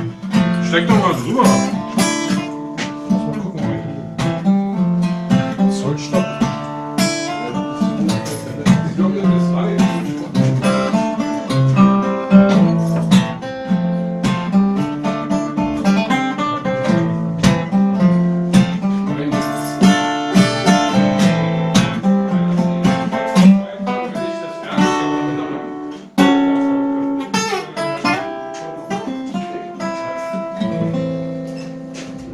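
Acoustic guitar being played, a continuous run of plucked notes and strummed chords, with a brief drop in loudness about 26 seconds in.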